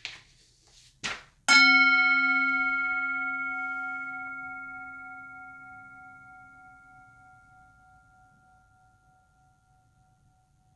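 Two short handling noises as the brass singing bowl is set down, then the bowl is struck once about a second and a half in. It rings with a low tone and several higher overtones that fade slowly over about eight seconds, the middle tone lingering longest.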